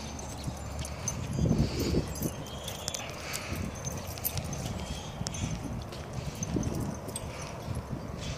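Irregular soft footfalls and scuffs on dry, bare dirt, with scattered small clicks.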